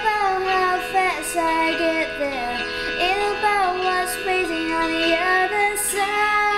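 Music: a child singing a melody over an accompaniment, with a light beat about once a second.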